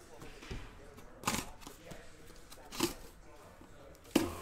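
Packing tape on a cardboard shipping case being cut open, with two short rasps about a second and a half apart over faint handling noise.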